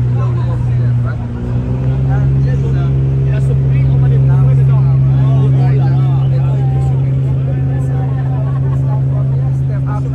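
A moored boat's engine running steadily with a low hum, its pitch stepping up slightly about a second and a half in, under a babble of voices.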